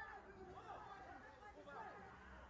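Faint, indistinct chatter of several voices, as if heard through a phone's microphone.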